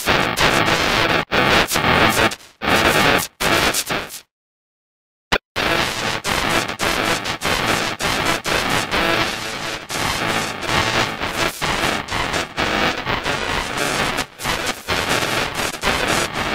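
Loud, heavily distorted music turned into a harsh cacophony and chopped by abrupt cuts, with about a second of complete silence a little after four seconds in.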